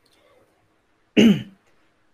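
A single brief nonverbal sound from a man's voice, about a second in, short and falling in pitch.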